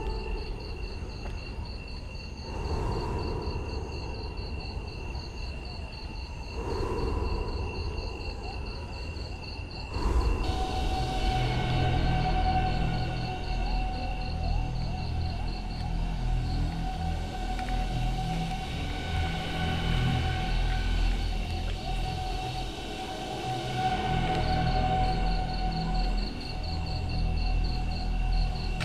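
Crickets trilling in a fast, steady pulse, under eerie held drone tones like ambient horror music. About ten seconds in the sound jumps louder and a low rumble joins it.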